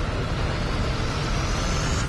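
Cinematic logo-sting sound effect: a deep rumble with a rising whoosh that builds and then cuts off sharply at the end.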